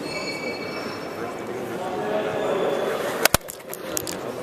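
Indistinct voices and hall noise, with a brief high squeal in the first half-second. About three seconds in come two sharp knocks, then a few fainter clicks near the end: handling noise as the hand-held camera is swung around.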